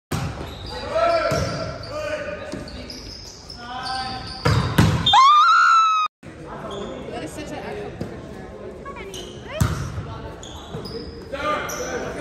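Volleyball rally in an echoing gymnasium: sharp smacks of the ball being hit, two in quick succession about halfway through and another near the end, over players shouting and calling. The sound cuts out for a moment about six seconds in.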